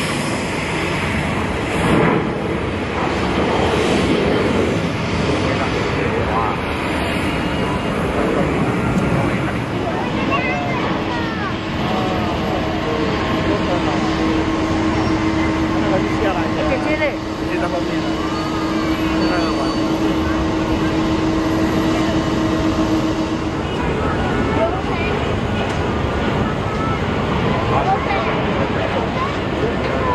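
Jet airliner engines at high power during takeoff, a steady roar throughout, with a steady hum holding from about eleven seconds in until shortly before the end. People can be heard talking from about ten seconds in.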